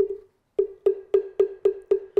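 Moktak (Korean Buddhist wooden fish) struck with its mallet. One knock, a short pause, then a steady run of knocks, about four a second, each a hollow knock with a brief ringing tone. It is the lead-in to a Buddhist chant.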